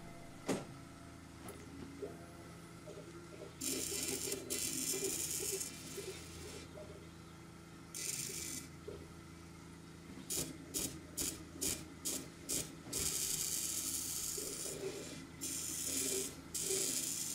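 K40 laser cutter running a job: the stepper motors whir as the head moves over the bed in stop-and-go strokes. There are stretches of hissing noise, and a run of short quick moves near the end, over a steady fan hum.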